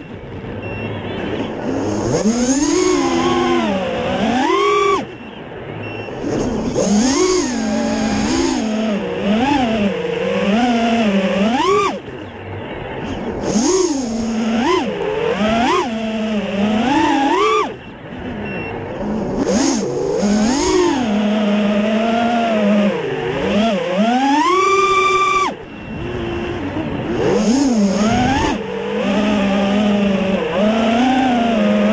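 FPV quadcopter's brushless motors and propellers whining, recorded on its own onboard camera. The pitch surges up and down constantly with the throttle, with sudden drops to a quieter, lower hum several times, about 5, 12, 18 and 25 seconds in.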